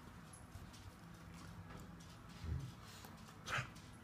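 A puppy and a dog play-fighting. There is a brief low grunt about two and a half seconds in and a short, breathy huff near the end; the rest is quiet.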